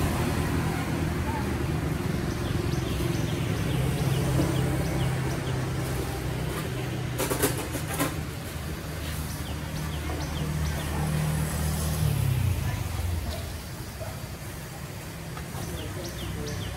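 A vehicle engine running steadily, which drops in pitch and fades away about twelve seconds in. A short burst of crackling rustle comes around seven to eight seconds in.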